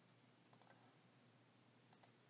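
Near silence, broken by a few faint computer-mouse clicks: a couple about half a second in and one more near the end.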